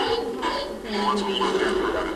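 Voices with a little music playing through a loudspeaker, like the sound of a television or a video game in a small room.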